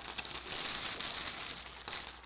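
Coins clinking and jingling in a dense, steady shower with a high metallic ringing; it fades near the end.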